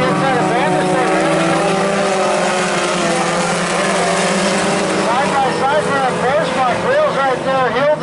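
A pack of four-cylinder pony stock race cars running together on a dirt oval, a steady blended engine drone. A voice comes in over it about five seconds in.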